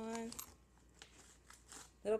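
Faint rustling and crinkling of a small plastic needle packet being worked out of a fabric organizer pocket, with a few light clicks.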